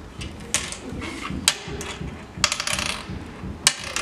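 Hard oware seeds clicking against a wooden oware board as they are picked up and dropped into its pits. There are single sharp clicks about half a second in and around a second and a half, a quick run of clicks around two and a half to three seconds, and another sharp click near the end.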